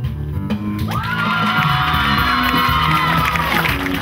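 Backing music with a steady bass line; about a second in, children's voices rise into one long, high, held shout that lasts nearly three seconds.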